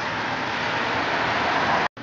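Steady rushing noise of road traffic with no voice over it, cut off abruptly near the end.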